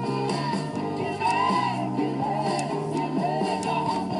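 Rock song with singing and guitar playing through the Sanyo M4500 boombox while its resoldered potentiometer is turned. The music plays cleanly, with no scratching from the pot.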